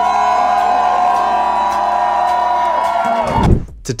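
A live band holding one long sustained note or chord for about three seconds. It cuts off a little after three seconds with a single loud final hit.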